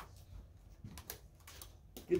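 Quiet room tone with a low steady hum and a few faint, brief clicks and taps.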